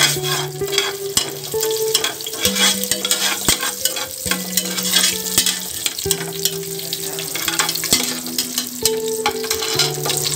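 Whole spices sizzling as they fry in hot oil and ghee in an aluminium pressure cooker, with a metal spatula stirring and scraping against the pot in frequent short strokes.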